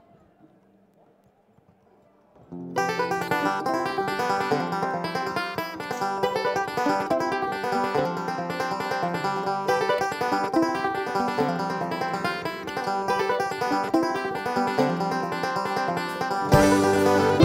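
A live acoustic string band with mandolin, fiddle, acoustic guitar, upright bass and drums kicks into a bluegrass-style tune. It comes in all together about two and a half seconds in after a near-quiet pause, with fast plucked string picking.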